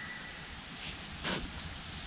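Faint rustling of a PVA mesh stick being handled and tied by hand, with one soft swish a little after the first second, over a quiet outdoor background with a couple of faint high chirps near the end.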